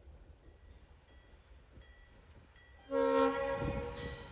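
Diesel locomotive's air horn sounding one blast of about a second, a chord of several steady tones, about three seconds in, over the low rumble of the locomotive working at low speed.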